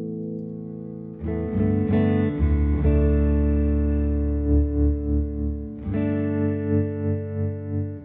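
PRS SE 277 baritone electric guitar tuned to B standard, played through a Fender amp. A chord rings and fades, then new notes are picked about a second in, with a deep low note that rings on. Another chord is struck near the end and left to sustain.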